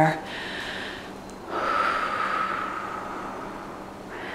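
A woman's deep breath, close to the microphone: a soft breath in, then a louder, longer breath out starting about a second and a half in that slowly fades away.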